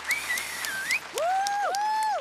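Audience clapping and whistling. A high, wavering whistle runs through the first second, then two lower, longer calls rise and fall, with scattered claps throughout.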